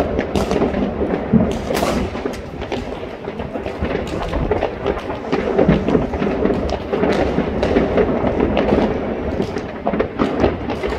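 New Year's Eve fireworks and firecrackers going off across a city at once: a dense, unbroken stream of overlapping bangs and crackles.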